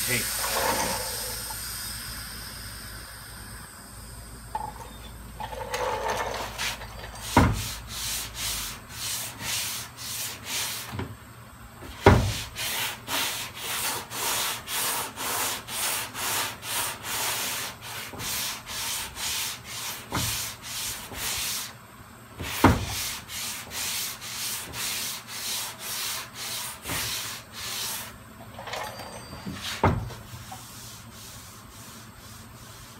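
Sandpaper on a hand sanding block rubbing back and forth over a car door's bodywork in even strokes, about two a second, starting a few seconds in. This is final block sanding before primer. A few sharp knocks break in.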